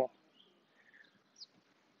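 A man's voice ends a word at the very start, then quiet outdoor background with a few faint, brief bird chirps.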